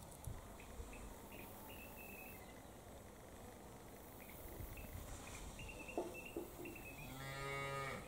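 A cow moos once near the end: a single low call lasting about a second. Before it there is only a quiet background with a few faint, short high chirps.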